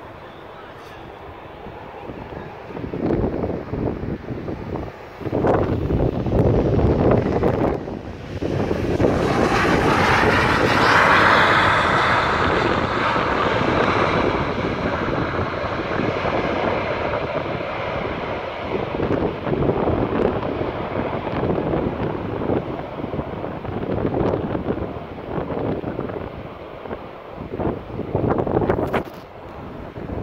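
Boeing 737 jet landing. The engine noise builds over the first few seconds and is loudest about ten seconds in as the aircraft comes past. The roar then holds and slowly eases as it rolls out along the runway, with wind gusting on the microphone.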